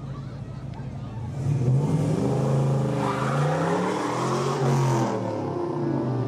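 Engine of a mid-1960s Chevrolet C10 pickup revving up and down several times as it drives by, louder from about a second in. A hiss, likely tyres on the wet road, runs under it.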